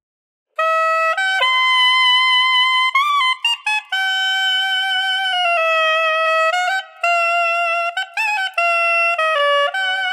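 Soprillo, the tiny sopranissimo saxophone pitched an octave above the B-flat soprano, played solo. After about half a second of silence it plays a simple line of high held notes stepping up and down with short breaks, kept to its lower range.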